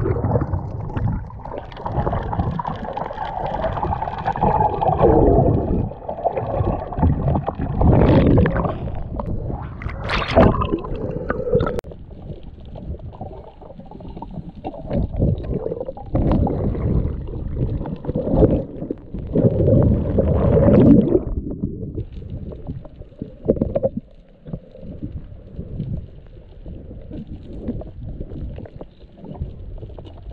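Water heard through a submerged camera: muffled rushing and gurgling of water and bubbles, with a burst of bubbles from entering the water, swelling and fading every couple of seconds.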